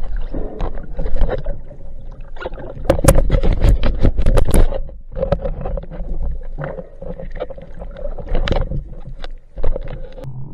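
Underwater water noise against an action camera's housing: swirling, bubbling wash with many irregular clicks and knocks as the diver moves, over a faint steady hum, loudest from about three to five seconds in.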